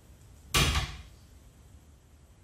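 A wooden door swung shut with one loud bang about half a second in.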